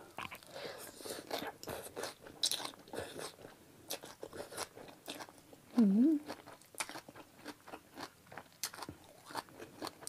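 Close-miked eating sounds: chewing a mouthful of rice noodles, fresh herbs and chicken feet, with many short crisp crunches and wet mouth clicks. A short hummed "mm" comes about six seconds in.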